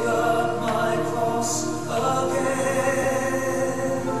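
Worship music with a choir singing held notes, the chord changing about two seconds in.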